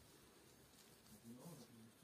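Near silence, with a faint, distant voice starting about a second in.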